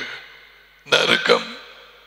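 Speech only: after a short pause, a man says a brief phrase about a second in.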